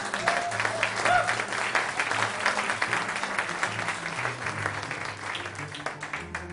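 Small audience applauding mid-tune, with a brief cheer in the first second or so, while an electric guitar keeps playing low notes underneath. The clapping thins out near the end.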